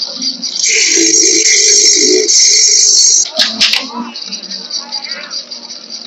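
Film soundtrack: a loud, high-pitched continuous ringing sound over music, loudest in the first three seconds, broken by a sharp crack about three and a half seconds in.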